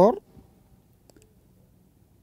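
A spoken word ends right at the start, then a few faint, light clicks about a second in over quiet room tone.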